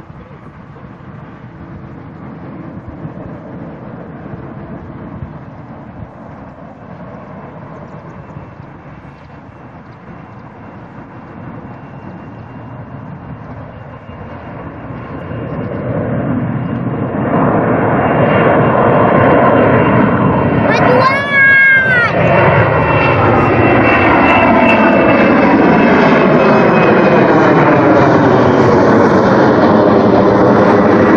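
Twin-engine jet airliner climbing out after takeoff. Its engine noise is a steady distant rumble at first, then swells about halfway through to a loud roar as it passes overhead, with a sweeping, swirling tone.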